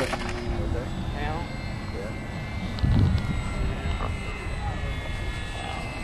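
Wind buffeting the microphone, with a stronger gust about three seconds in, over a faint steady whine from the E-Flite Apprentice RC plane's electric motor and propeller flying overhead.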